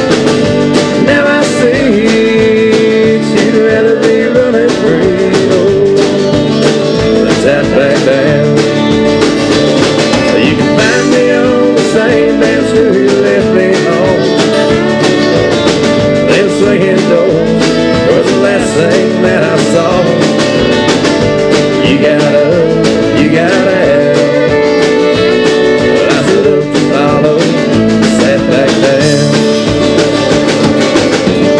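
Live country band playing an instrumental break: electric guitar, acoustic guitar and fiddle over a steady beat, with a wavering lead melody on top.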